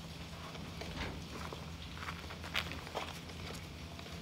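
Young gray squirrels' claws scratching and tapping on a cotton shirt as they scramble and climb on a person, a few short irregular clicks and scrapes, loudest about two and a half seconds in.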